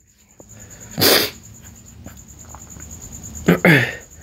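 A person sneezes: one short, sharp burst about a second in, then a second loud burst with a falling voice near the end.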